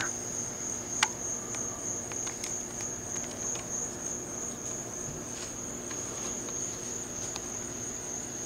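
A steady, high-pitched whine runs throughout, with one sharp click about a second in and a few fainter ticks.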